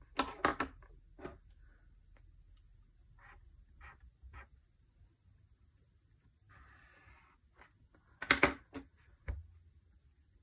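Mildliner highlighter pens being picked up and set down on a desk, their plastic barrels clicking and knocking in two loud clusters, with a short scratch of a felt tip drawing a line on paper between them. A single low thump comes near the end.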